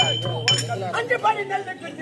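Small hand cymbals struck twice, at the start and about half a second in, ringing briefly. A performer's voice then speaks in Tamil over a low steady drone that fades out near the end.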